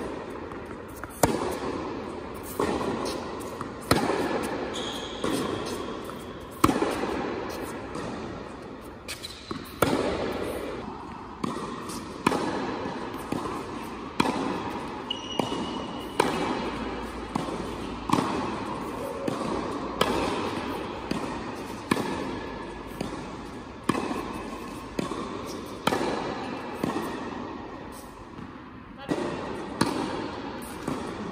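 Tennis ball struck by rackets in a rally, about one hit every second and a half, each sharp hit trailing off in the echo of a large indoor tennis hall. The shots run from backhand groundstrokes to volleys at the net.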